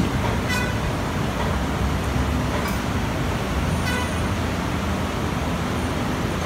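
Steady low rumble of sintering-plant machinery running, with two faint brief high-pitched sounds, about half a second in and near four seconds in.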